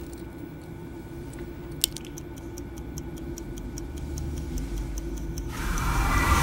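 Steady clock-like ticking over a low hum, with one sharper click about two seconds in. Near the end a swell of noise rises.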